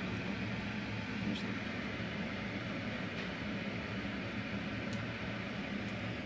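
Steady low hum and hiss of kitchen background noise, with a few faint clicks.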